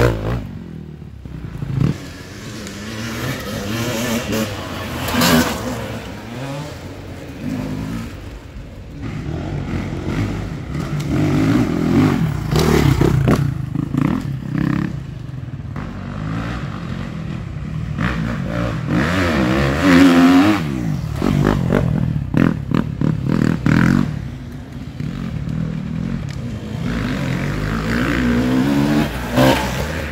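Off-road enduro motorcycles riding a muddy woodland track, their engines revving up and down as riders work the throttle. The engine sound swells as bikes come near, with the loudest passes around the middle and near the end.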